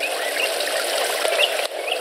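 Steady hiss of outdoor background noise on a film soundtrack, with a few faint short chirps.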